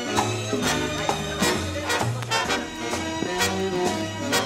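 Swing band playing an instrumental passage with no singing: deep bass notes change about every half second under steady drum strokes about twice a second, with the brass sections playing above.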